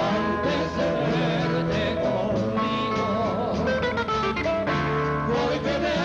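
Live bolero played by a trio on acoustic guitars, picked melody over strummed chords.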